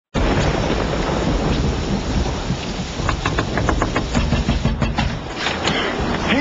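Heavy rain falling with a deep, steady rumble of thunder in a storm. About three seconds in there is a quick run of sharp taps.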